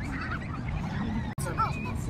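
Farm birds calling: a few short arched calls, faint near the start and clearest about one and a half seconds in, over steady outdoor background noise.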